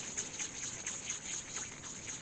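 Hands rounding a ball of bread dough on a baking mat: a quick, uneven run of soft sticky ticks and patters of palm and fingers on the dough, over a steady high hiss.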